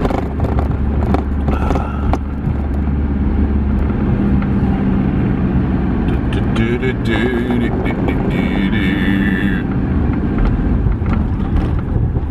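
Engine and road noise of a vehicle driving along a town street, heard from inside the cab, with a deep steady rumble that is strongest for the first few seconds.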